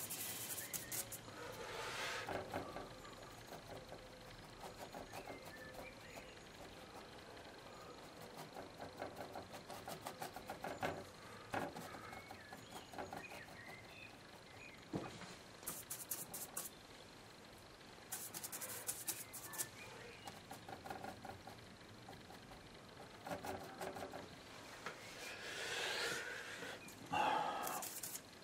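Faint, irregular scrubbing and dabbing of a bristle brush working oil paint, mixing on the palette and stroking onto an MDF board, in short bouts with the busiest stretch past the middle.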